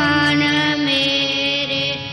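Kirtan on harmoniums: a sustained harmonium chord under a long held sung note, with no tabla strokes. It stops right at the end.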